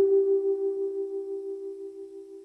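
Ambient electronic music: a held keyboard note slowly fading away, with a slight wavering in its tone.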